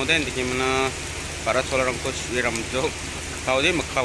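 A man talking over a steady low hum, with rain falling.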